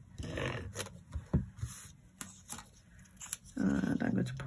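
Stampin' Seal adhesive tape runner scraping along a narrow strip of patterned paper, then paper handling with a few small clicks and taps as the strip is lifted and laid down.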